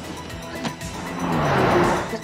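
A car skidding with tyres squealing, the noise building up loud in the second half, over the engine and background music.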